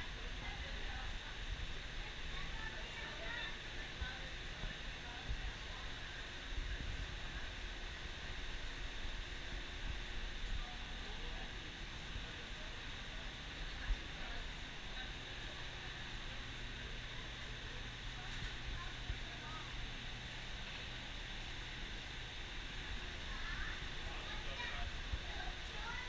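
Steady outdoor background noise with a low rumble and faint scattered voices.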